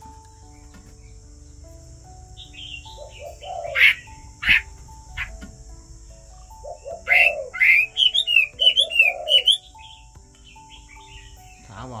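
Chinese hwamei singing: a short burst of loud, varied whistled notes about three seconds in, then a longer run of quick, repeated rising-and-falling whistles from about seven seconds in.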